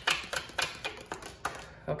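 Round oracle cards being handled and drawn over a wooden tabletop: a run of quick, irregular clicks and taps.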